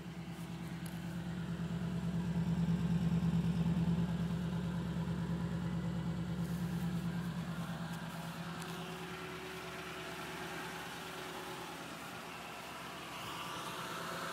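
A Toyota Tundra pickup's engine idling steadily. It grows louder about two to four seconds in, then eases back.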